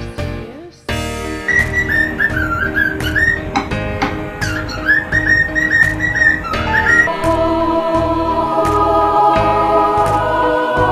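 A cockatiel whistling a long run of quick, wavering notes over background music with a steady beat. From about seven seconds in, only the music goes on.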